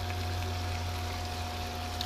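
Spaghetti with squid and vegetables sizzling in a pan: a steady frying hiss over a constant low hum.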